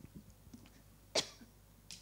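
A single short cough a little past halfway, against the quiet of a lecture hall, followed by a fainter brief sound near the end.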